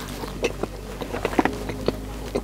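A man chewing a mouthful of chicken and flatbread close to the microphone: scattered small wet clicks and smacks over a steady low hum.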